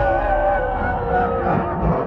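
Film trailer soundtrack: several held, slightly wavering musical notes over a deep, continuous low rumble of battle sound effects.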